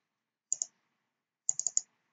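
Computer mouse clicks: a double click about half a second in, then a quick run of about four clicks near the end.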